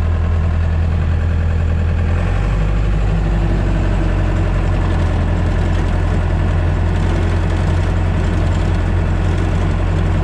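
Compact track loader's diesel engine running steadily under the operator, heard from inside the cab as the machine backs up. Its low engine note shifts about two seconds in.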